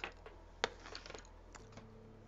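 A few light, sharp clicks and taps: one at the start, a louder one just over half a second in, a quick run of small ticks around a second in, and one more near the end. The sounds come from a body paint tube and brush being handled over a clear plastic palette lid.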